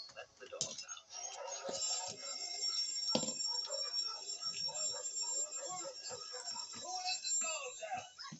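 Indistinct voice talking or murmuring. Faint steady high-pitched tones sound through most of it.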